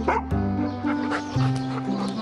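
Background music with a steady bass line, and over it a golden retriever gives a brief bark near the start.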